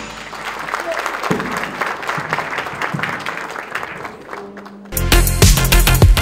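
Audience applauding, with voices mixed in. About five seconds in, loud electronic music with a heavy beat cuts in abruptly.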